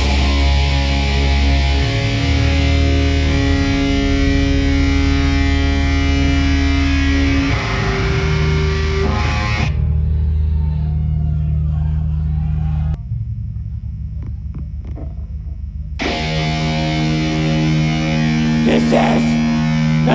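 Live metal band playing sustained, distorted guitar chords over bass and drums. About halfway through, the top end drops away. Then comes a quieter stretch of rapid low pulses, before the full band crashes back in, with a shouted vocal near the end.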